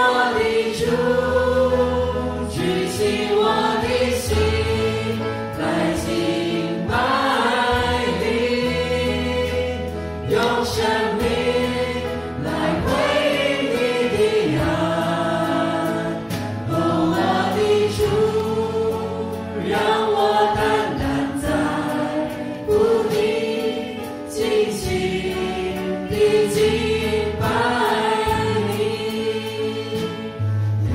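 A worship band performing a praise song live: several singers at microphones singing together over electric guitar, keyboard, bass and drums with a steady beat.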